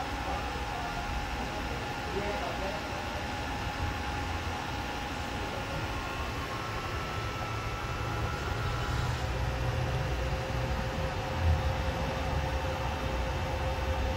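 A 2016 Toyota Aqua hybrid running with the hood open: a steady low hum with faint steady whining tones above it, while both its engine and hybrid-system water pumps circulate freshly changed coolant. It grows somewhat louder about eight seconds in.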